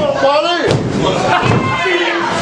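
Loud shouting voices with a sharp slam on the wrestling ring canvas about three-quarters of a second in.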